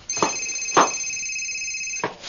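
Telephone ringing with a high electronic trill, one ring about two seconds long. Two sharp knocks from a knife on a cutting board come early in the ring, the second the louder.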